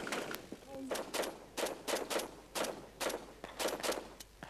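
Small-arms fire from a machine gun and rifles: sharp shots in short bursts of two or three, with gaps of roughly half a second to a second between bursts.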